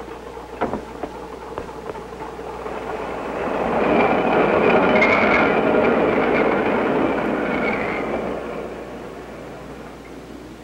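A streetcar passing on its rails, with a couple of knocks at the start. It grows louder from about three seconds in and is loudest in the middle, where its wheels squeal high on the track, then it fades away near the end.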